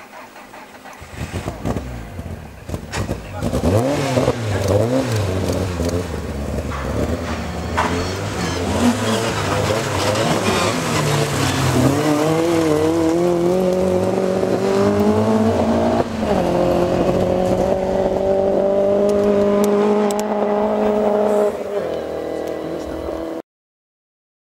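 Rally car engine revving hard through rises and falls in pitch as it comes on, then held at high, steady revs with one shift partway through, dropping near the end before the sound cuts off abruptly.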